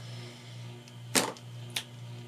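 Two sharp plastic clicks a little over a second in, about half a second apart, as white gel pens are set down on a craft cutting mat, over a steady low hum.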